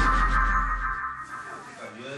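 Electronic transition sting of a TV programme: a steady synthetic tone cluster over a deep low rumble that stops about a second in, the whole fading away toward the end.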